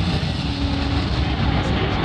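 Intro-video soundtrack played loud over a hockey arena's sound system: a heavy low rumble with a faint held tone over it and some music.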